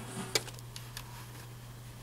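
Computer mouse button clicking: one sharp click about a third of a second in and a couple of fainter clicks, over a steady low electrical hum.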